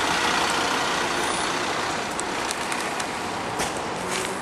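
Steady city street noise from passing road traffic, with a few short, sharp clicks in the second half.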